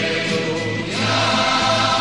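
Choral music: a choir singing held notes, swelling into a new, louder chord about a second in.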